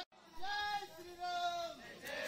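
Voices chanting in two long drawn-out calls, each held on one steady pitch, after a brief dropout at the very start.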